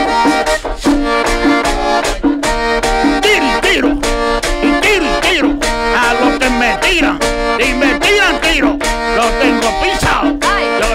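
Live merengue típico: a button accordion plays chords and runs over a quick, steady beat from a tambora drum and percussion.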